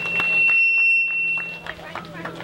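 PA system feedback: a single steady high-pitched whine from the podium microphone and loudspeaker, lasting about a second and a half before it cuts off.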